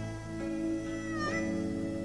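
Live band playing a slow ballad: steady held chords, with a note that slides upward about a second in and then holds.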